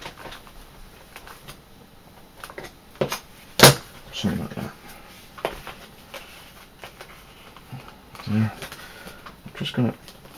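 Leather pieces and a knife being handled on a cutting mat: scattered light clicks and knocks, the sharpest one about three and a half seconds in.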